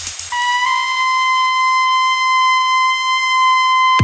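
Breakdown in an electronic dance music mix: the beat and bass drop out, and a single high synthesizer note with a bright, buzzy edge is held steady for about three and a half seconds.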